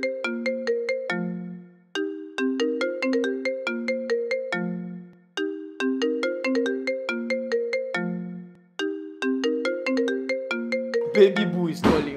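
Smartphone ringtone for an incoming WhatsApp audio call: a short melodic phrase of bell-like notes that repeats about every three and a half seconds.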